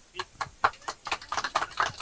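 A few people clapping, scattered and irregular, several claps a second.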